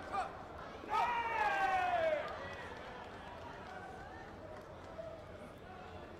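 A single long shouted call about a second in, falling in pitch over a little more than a second, above the steady murmur of a crowd in a large sports hall.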